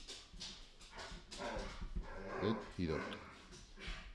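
A dog giving a series of short, pitched cries indoors, from about a second and a half in to about three seconds.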